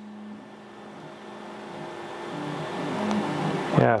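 Steady background hum of a motor or machine with several even tones, growing gradually louder.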